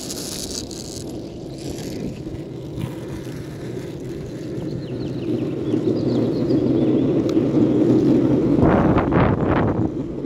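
Longboard wheels rolling over asphalt, a steady rumble that grows louder in the second half, with a few short, sharper bursts near the end.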